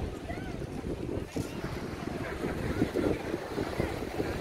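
Wind buffeting the microphone in uneven, low rumbling gusts, with faint voices of people talking in the background.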